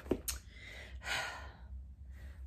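A woman sighs: one long breathy exhale of about a second, after a short click just after the start.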